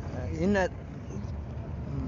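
Steady low rumble of a vehicle driving over a sandy dirt track. A short loud spoken syllable cuts in about half a second in.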